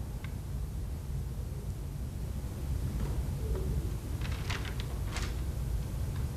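Steady low room rumble, with a handful of short rustles and scuffs about four to five seconds in.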